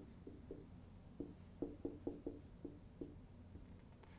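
Dry-erase marker writing on a whiteboard: a faint string of short, squeaky pen strokes, several a second, coming thickest about a second and a half in.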